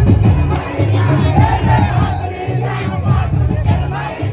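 Loud dance music with a heavy, pulsing bass line, with a group of young men shouting and cheering over it, the shouts loudest around the middle.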